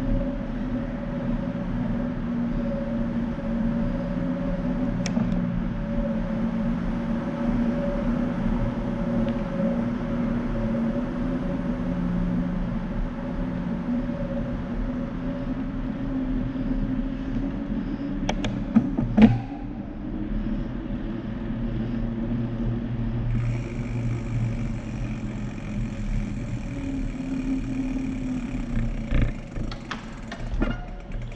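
Steady humming rumble of a bicycle rolling through a long concrete tunnel, the tyre and drivetrain hum wavering slightly in pitch with speed and echoing off the tunnel walls. A couple of sharp clacks come about two thirds of the way through, and a thin high tone joins soon after.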